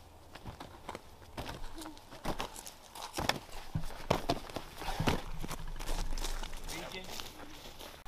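Irregular thuds and knocks of boots landing and hands striking wooden rails as a person vaults a row of low wooden obstacle-course rails.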